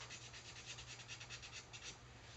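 Brush-tip marker dragged with its tip flattened across watercolor paper, a faint, rapid, even scratching that stops just before the end.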